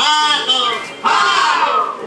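Loud shouted vocal cries: a short cry at the start, then, about a second in, a long call that slides down in pitch.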